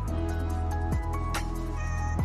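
Background music: an electronic beat with deep kick drums and sustained synth chords.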